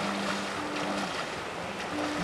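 Water sloshing and splashing as someone wades through shallow flooded woods, with soft, low background music notes underneath.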